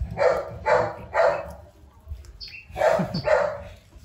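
Young beagle puppy barking in short sharp barks: three quick ones in the first second and a half, then two more about three seconds in, while being held on its back during a bath.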